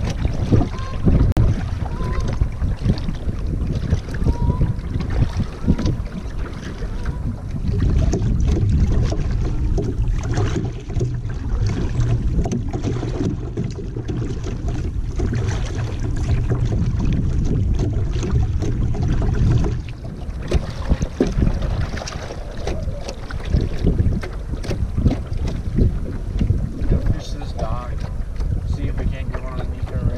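Wind buffeting the camera microphone in a steady low rumble, with the dip and splash of a double-bladed kayak paddle stroking through the water, lighter in the second half.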